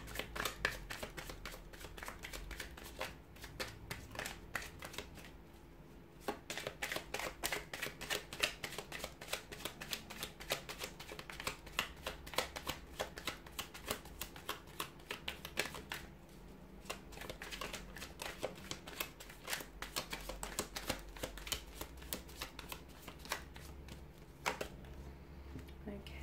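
A deck of tarot cards being shuffled by hand: long runs of quick, crisp card flicks, pausing briefly a few times between bouts of shuffling.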